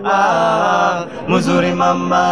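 Several men singing together a cappella into a handheld microphone, holding long sung notes, with a short break a little over a second in before the next held note.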